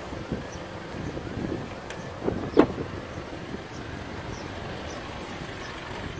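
Outdoor car-park noise, with wind rumbling on the phone microphone, and one sharp thump about two and a half seconds in.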